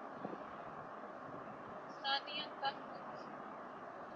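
Faint, steady background noise, with three short high-pitched tones just after two seconds in.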